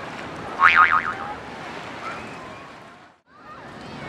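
A gull giving a short, loud, wavering call about half a second in, over steady wind and water noise. The sound cuts out briefly a little after three seconds.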